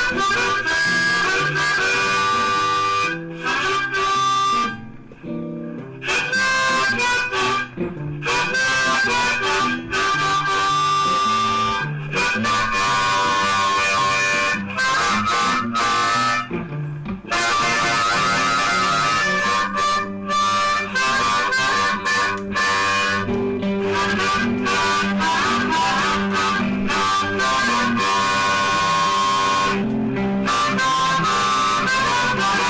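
Hohner Marine Band diatonic harmonica in C, improvising a blues in G (cross harp, second position) over a backing track with guitar.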